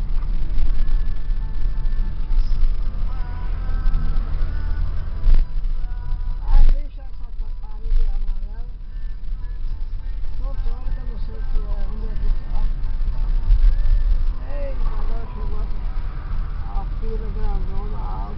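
Steady low rumble of road and engine noise inside a moving car's cabin. Two sharp thumps about five seconds in and again a second or so later, with faint voices or radio in the background.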